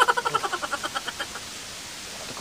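A person giggling: a quick, high-pitched run of laugh pulses that fades away over about a second.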